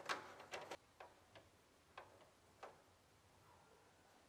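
Faint light plastic clicks as a black plastic trim piece is pushed and fitted into a Mercedes W211 plastic bumper: a quick cluster of clicks in the first second, then single clicks every half second or so until near three seconds in.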